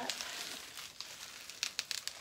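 Bubble wrap and cardboard rustling as a bubble-wrapped box is lifted out of a cardboard shipping box, with a few sharp crackles near the end.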